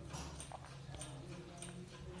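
A quiet pause: faint low room hum with a few soft clicks about half a second apart.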